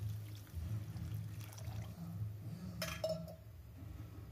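Tamarind water poured in a thin stream into an aluminium kadai of sautéed vegetables, a soft steady splashing. A brief clack about three seconds in.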